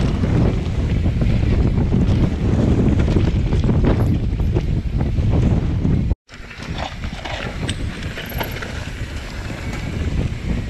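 Wind buffeting a GoPro's microphone while a mountain bike descends a dirt trail, with tyre rumble and many short rattles and clicks of the bike over rough ground. A little after six seconds in the sound drops out for an instant and comes back quieter, with the rattles standing out more.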